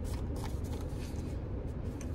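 Steady low rumble of a car cabin, with a few faint clicks and rustles over it.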